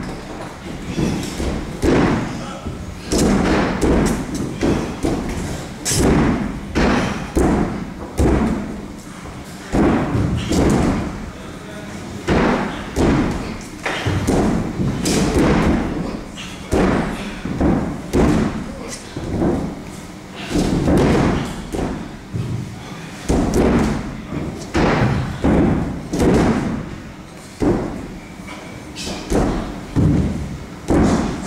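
Repeated dull thuds, roughly one a second and irregular, during boxing training on the ring mat, with voices in between.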